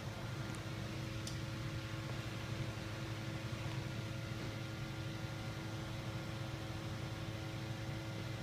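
Canon PIXMA MX870 all-in-one's automatic document feeder drawing a page through and scanning it: a steady motor hum, with two faint clicks within the first second and a half.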